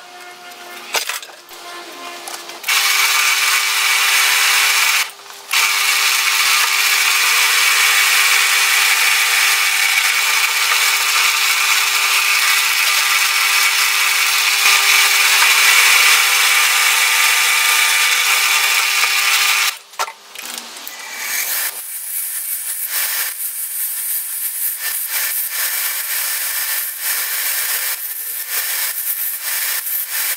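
A hand-lever bench shear clunks as it cuts steel strip. Then a drill press runs with a steady hum and drills through the steel for about seventeen seconds, stopping briefly once. In the last several seconds a bench belt sander runs unevenly as a small steel part is pressed against the belt.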